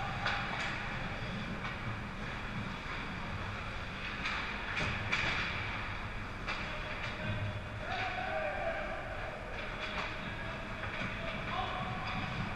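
Ice hockey rink sound heard from behind the net: skates scraping on the ice and sticks clacking in short strokes over a steady low hum, with faint distant calls of players.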